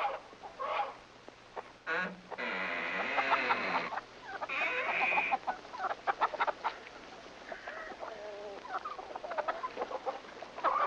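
Domestic chickens clucking, with two loud drawn-out squawks about two and a half and four and a half seconds in, then softer, shorter clucks.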